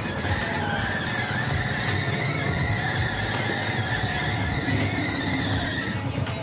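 Bamboo train (norry) running along the rails: a small engine and rolling wheels, with a high squeal that wavers in pitch.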